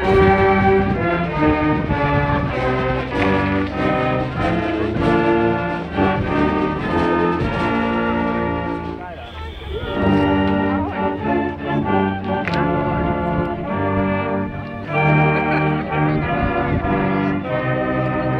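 Brass band of trumpets, trombones, saxophones and sousaphone playing a tune in held chords, with drums. The playing breaks off briefly about nine seconds in, then starts again.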